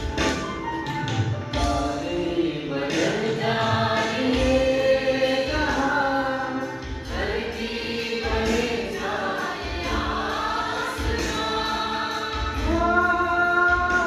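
Devotional group singing (a bhajan), men and women singing together, accompanied by harmonium and tabla. The drum strokes keep a steady beat under the held, gliding sung notes.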